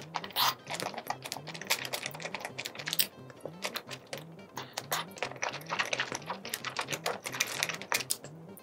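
Close-up eating sounds of sauce-coated spicy seafood: wet chewing, lip smacks and sucking, heard as a dense run of small sharp clicks with a few louder bites.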